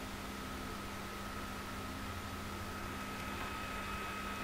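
Steady background hiss with a faint constant high whine and a low hum, and no distinct event: the noise floor of the recording's microphone and electronics.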